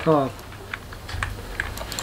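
A few light, separate clicks of a computer keyboard at a desk, spaced roughly half a second apart, with a low steady hum underneath.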